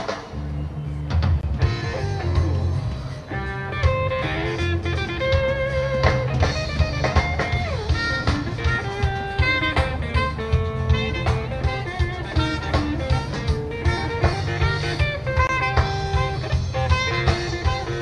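Live rock band playing an instrumental passage between choruses: electric guitar notes over bass and a drum kit keeping a steady beat.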